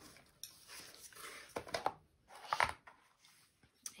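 A few short knocks and scrapes as a plastic cutting mat, chipboard strips and an acrylic straightedge are moved and set down on a tabletop.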